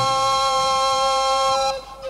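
Recorders in a live progressive-rock band holding a sustained chord together. The chord stops shortly before the end, giving way to quicker notes.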